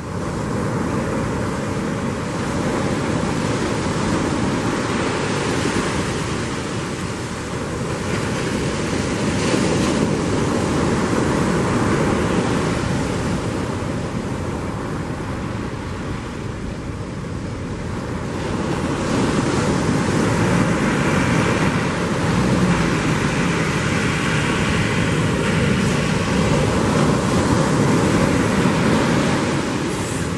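Ocean surf breaking and washing up on a sandy beach, a steady rushing noise that swells and eases over several seconds, with wind buffeting the microphone.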